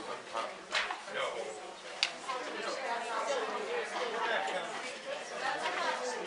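Background chatter of several people talking in a large room, with two sharp clicks, one just under a second in and the other about two seconds in.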